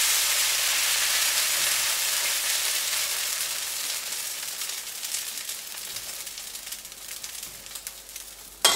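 Dosa batter sizzling on a hot nonstick pan as it is spread thin with a ladle. The sizzle fades steadily, breaking into fine crackling toward the end.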